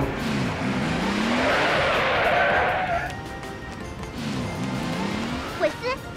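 Cartoon race-car sound effects. An engine revs up in a rising pitch while a hissing tyre screech runs for the first three seconds, then a second rising rev comes about four seconds in.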